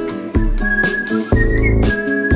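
A song's instrumental section with a whistled melody held as long high notes, the line bending upward near the end, over band backing with a steady beat.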